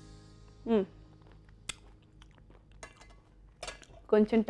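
A short closed-mouth 'hmm', then faint chewing of a mouthful of food, with scattered small mouth clicks.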